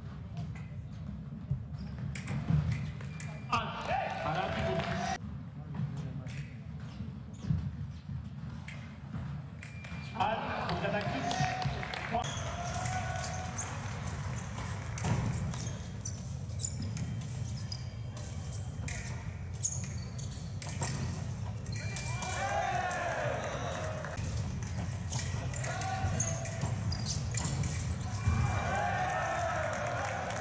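Sound of foil fencing bouts in a large hall: sharp clicks and stamps from footwork and blades on the piste over a steady low hall hum, with several spells of raised voices.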